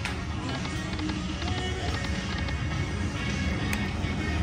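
Buffalo Gold video slot machine spinning its reels, its short electronic tones and chimes playing over the steady din of a casino floor full of other machines.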